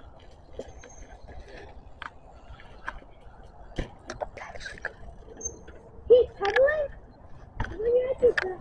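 A person's voice calling out, loudest about six seconds in, over a quiet outdoor background with scattered light clicks and knocks.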